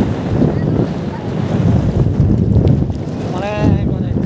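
Wind buffeting the microphone: a loud, steady low rumble. Near the end a person's voice calls out briefly.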